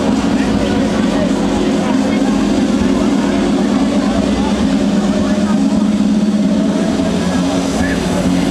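Arena crowd noise: many voices shouting and cheering at once in a steady, unbroken din.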